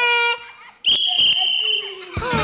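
A referee's whistle blown once, a single steady high-pitched blast about a second long, starting just before the middle, signalling the start of the race. A short held vocal sound comes just before it.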